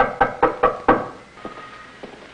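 Knuckles rapping on a wooden door: a quick series of about five knocks in the first second.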